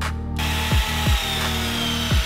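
A small handheld power tool starts about half a second in and runs steadily with a whine, over background music with a deep kick-drum beat.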